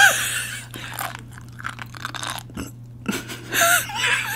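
Close-miked chewing of sea grapes: soft, irregular small wet pops and crackles, a little louder near the end.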